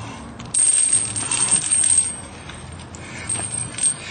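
Heavy metal chains rattling and clinking, starting suddenly about half a second in and easing off after about two seconds in.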